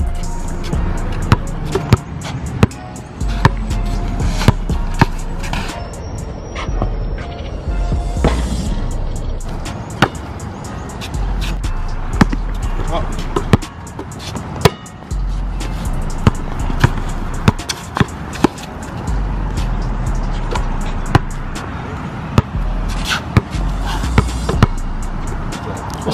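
A basketball dribbled on an asphalt court, sharp irregular bounces, over background music with a deep bass line.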